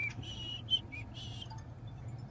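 A few short, high chirping whistle notes in the first second or so, over the low steady hum of an idling car.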